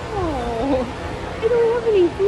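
Goats bleating: two drawn-out, wavering bleats, the first sliding down in pitch.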